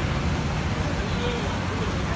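Busy eatery ambience: a steady low rumble and hiss with faint voices chattering in the background.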